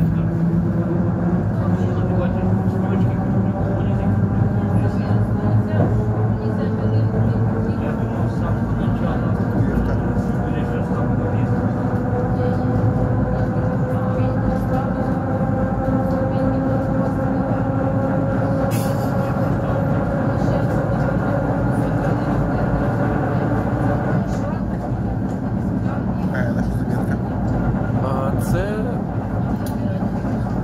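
Running noise inside a moving ER9-series electric train carriage: a steady rumble, with a whine that rises slowly in pitch through the first twenty seconds as the train gathers speed, then fades.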